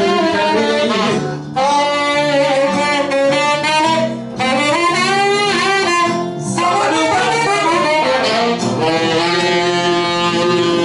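Tenor saxophone playing a swing jazz line in phrases, with short breaks about one and a half and four seconds in, over guitar and bass accompaniment.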